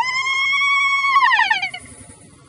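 A person screaming: one long, high-pitched cry with a wavering pitch that falls away and stops about a second and a half in.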